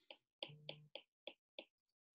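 Stylus tip tapping on a tablet's glass screen while drawing short strokes: about six faint, sharp clicks over a second and a half.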